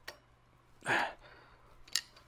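A Phillips screwdriver turning the clamp screw of a pipe polishing attachment fitted to an angle grinder: a faint click, a short scrape about a second in, and another light click near the end.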